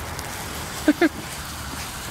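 Small ground fountain fireworks burning with a steady hiss. A voice makes two short sounds about a second in.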